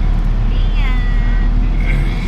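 Steady low engine and road noise heard inside a moving vehicle's cabin. About half a second in, a short high sound falls in pitch and then holds briefly.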